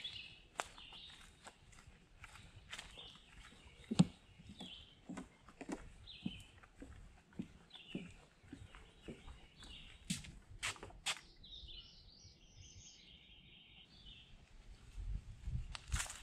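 Footsteps along a woodland trail, about one or two a second with a sharper one about four seconds in, while birds chirp repeatedly in the trees, with a longer high trilling phrase near the end.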